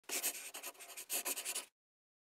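A quick run of short, scratchy strokes, like a pen scratching on paper, that cuts off suddenly just before the end.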